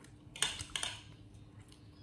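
A metal spoon clinking against a ceramic bowl and plate: a few quick clinks about half a second in.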